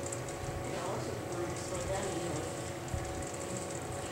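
A faint voice in a quiet room, with a single soft knock about three seconds in.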